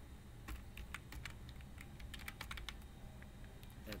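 Computer keyboard typing: irregular bursts of keystroke clicks.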